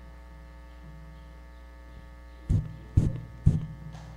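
Steady electrical mains hum from a church sound system. About two and a half seconds in come three dull thumps, half a second apart, picked up through the microphone.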